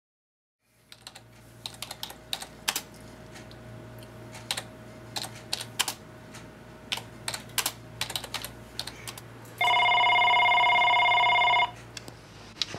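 Computer keyboard typing in irregular keystrokes over a low steady hum. Near the end a desk telephone rings once, a loud warbling electronic ring about two seconds long.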